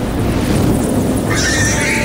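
Animated creature sound effects for buzzard wasps: a steady low rumble under a shrill, wavering screech that comes in about a second and a half in and runs to the end.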